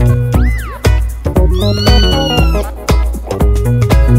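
Upbeat music with a steady beat, with a cat's meow mixed in: a short rising-and-falling call about half a second in, then a longer arching meow in the middle.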